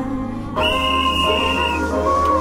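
Electronic dance music from a DJ set, played loud over a club sound system. About half a second in, a new section comes in with a heavy bass and a high held note.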